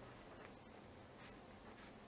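Faint scratching of a pen drawing on paper, a few short strokes over near silence.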